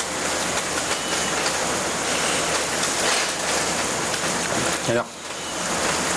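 A loud, steady rushing hiss, even and without any pitch or rhythm, in the manner of heavy rain, running until a short spoken line near the end.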